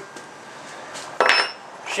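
A single short metallic clink about a second into the pause, with a brief high ring after it.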